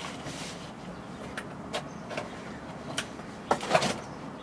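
A cardboard shipping box being handled and opened: a burst of rustling and scraping, then several light knocks and taps.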